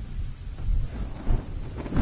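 A low, rolling thunder-like rumble with a fainter rain-like crackling hiss, swelling near the end: the sound effect of an animated logo intro.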